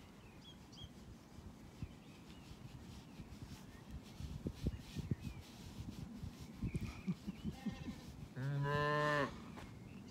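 Soft rubbing and rustling of a gloved hand scratching a sheep's woolly fleece close to the phone. Then, about 8 seconds in, a sheep gives one low, steady bleat lasting about a second, the loudest sound here.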